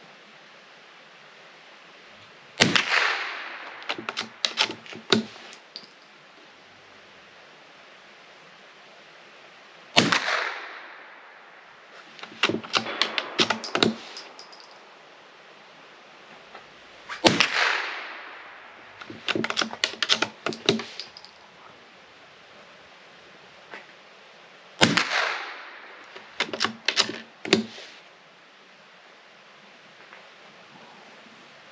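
Scoped Springfield Armory 2020 Rimfire bolt-action rifle firing .22LR: four single shots, one every seven to eight seconds, each with a short echoing tail. About a second and a half after each shot comes a quick run of metallic clicks as the bolt is worked to eject the case and chamber the next round.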